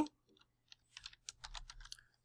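Typing on a computer keyboard: a quick run of about a dozen key clicks, starting a little under a second in.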